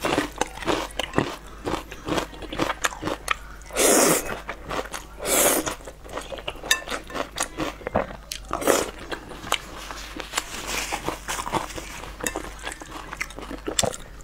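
Close-miked eating of thick sauced noodles: wet chewing and smacking throughout, with a few longer, louder slurps, one about four seconds in, another soon after and one past the middle.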